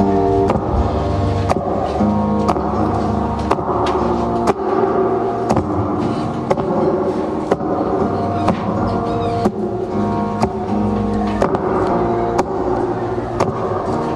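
Acoustic guitar strummed in an instrumental passage of a song, with a sharp accent about once a second.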